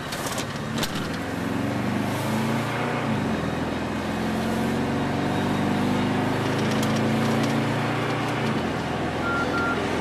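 Car engine and road noise heard from inside the cabin while driving. The engine climbs in revs, drops back about three seconds in as it shifts, then runs steady at speed and eases off near the end. Two short high beeps sound just before the end.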